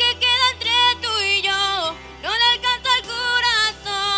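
A young woman singing a Spanish-language pop ballad solo into a handheld microphone over sustained backing chords. She holds her notes with vibrato, with a short breath break about a second and a half in.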